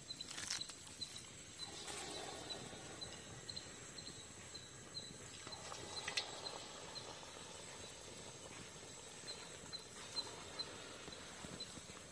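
Balls of sweet maida bonda batter frying in hot oil in an iron kadai with a faint, steady sizzle. A batter ball drops into the oil about half a second in and another about six seconds in, each a short sharp splash.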